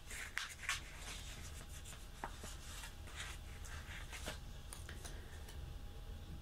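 Soft rustling and rubbing of paper as a sticker is handled and smoothed down onto a planner page by hand, with a few light ticks.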